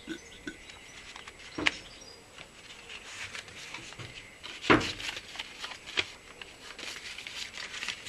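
Handling knocks on a forklift lead-acid battery pack as a bulb hydrometer is lifted out of a cell and laid on the cell tops. There are three sharp clicks or knocks, the loudest about halfway through.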